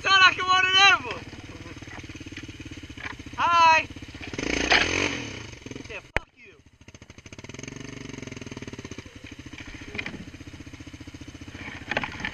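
ATV engine running steadily at low speed. A high-pitched voice calls out twice, near the start and about three and a half seconds in, and a rush of noise follows. A sharp knock comes about six seconds in, after which the engine sound is briefly muffled before it resumes.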